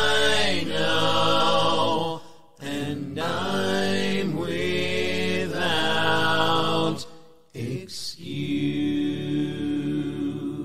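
A cappella hymn singing with no instruments, in long sung phrases that break off briefly for breath about two and a half and seven seconds in.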